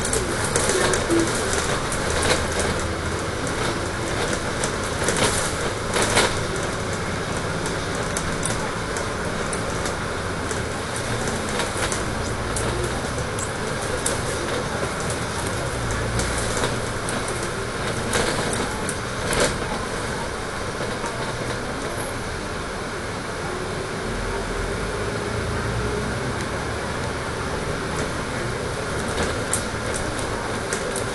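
A Dennis Trident 12 m double-decker bus under way, heard from inside: a steady engine rumble and road noise. Sharp clicks and rattles from the bodywork come through, several in the first six seconds and a couple more about eighteen seconds in.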